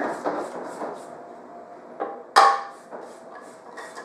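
Silicone spatula scraping the sides of a stainless steel stand-mixer bowl, with a small click about two seconds in and then a sharp, ringing metal clank, the loudest sound.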